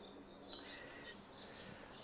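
Faint outdoor night ambience: a low, even background hiss with a single short chirp about half a second in.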